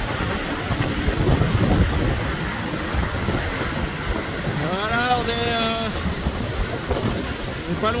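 Wind buffeting the microphone and water rushing past on board a racing trimaran under sail, a steady loud rush. About five seconds in, a person's voice holds a drawn-out sound for about a second.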